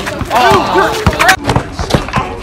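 Excited, wordless shouts from players and onlookers, with a few knocks of a basketball bouncing on asphalt.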